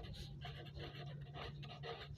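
Faint scratching of a pen writing a word on ruled notebook paper, in short irregular strokes over a low steady hum.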